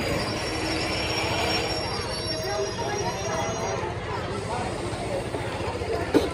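Indian Railways ICF passenger coaches rolling along the platform track, a steady rumble with thin, high-pitched wheel and brake squeal that fades out about four seconds in as the arriving train slows.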